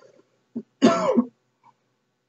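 A person coughing: a short catch just past half a second in, then one louder cough about a second in.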